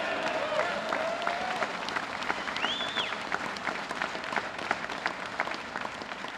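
Audience applauding, a dense patter of many hands clapping, with a short high whistled note about halfway through.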